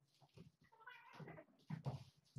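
Young tabby kittens squabbling: hisses and spits with a wavering growl in the middle, loudest near the end.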